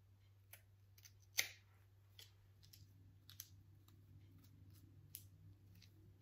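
Scissors snipping the hair of a short human-hair wig at the sideburn: about eight faint, separate snips, the loudest about a second and a half in.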